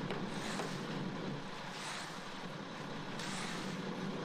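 Steady running noise of a ready-mix concrete truck on site, an even drone and hiss with no distinct strokes.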